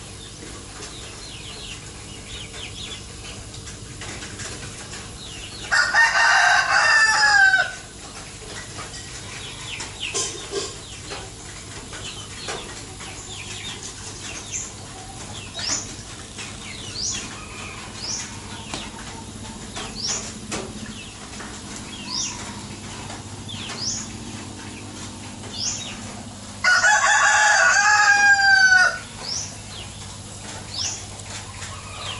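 A rooster crowing twice, each crow about two seconds long and ending in a falling note, the first about six seconds in and the second near the end. Between the crows, short high chirps repeat about once a second.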